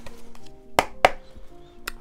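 Quiet background music of soft held tones. Two sharp taps come about a second in, and a third near the end.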